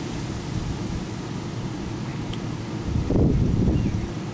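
Wind noise rumbling on the microphone, with a stronger gust about three seconds in.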